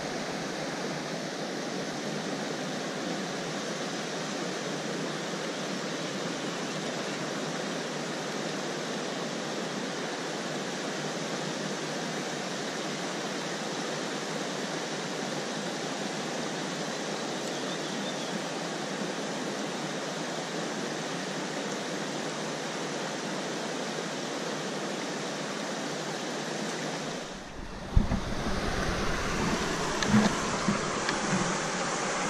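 Steady rush of a shallow rocky stream running over a riffle. Near the end the sound dips briefly, then a sharp knock, then louder, closer running water with a deeper rumble.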